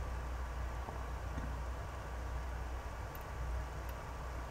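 Faint, steady room tone: an even hiss with a constant low hum underneath, and nothing else distinct.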